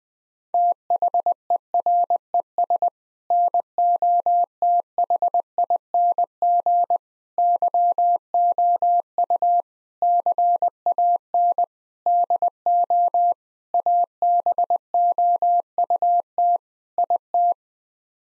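Morse code sent as a single steady beep at 20 words per minute, keyed in short dits and longer dahs with pauses between words. It is the repeat of the phrase just spoken, 'there is nothing you can do about it'. It starts about half a second in and stops just before the end.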